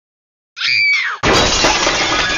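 A short tone that falls in pitch, then a loud, sudden crash of breaking glass about a second in, the shards ringing on.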